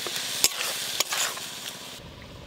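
A metal spatula stirring and scraping a grated coconut and date-palm jaggery filling around a metal wok over a wood fire, with a steady sizzling hiss from the hot mixture. The spatula knocks sharply against the pan twice, about half a second and a second in.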